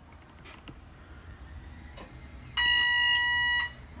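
Bus dashboard warning buzzer sounding one steady electronic beep about a second long, just past the middle, as the cab's systems power up after the switch is turned on. A couple of faint switch clicks come before it over a low hum.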